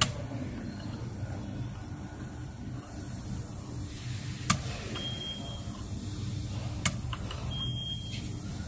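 DIP switches on a beam smoke detector's circuit board flicked with a screwdriver tip: three sharp clicks, one at the start, one about four and a half seconds in and one near seven seconds, over a steady low hum.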